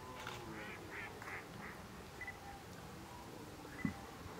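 Distant waterfowl calling: a run of about five short calls in the first two seconds, then a brief high call twice. A short knock comes just before the end.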